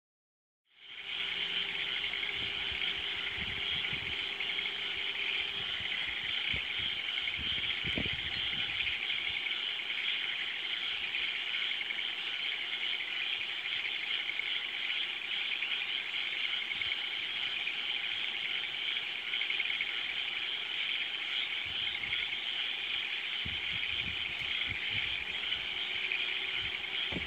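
Dense, steady chorus of many frogs calling together at night, a continuous high-pitched trilling. Occasional low bumps on the microphone.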